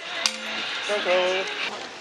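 Light clatter of items being handled on a table, with a sharp click about a quarter second in and a short voice sound about a second in.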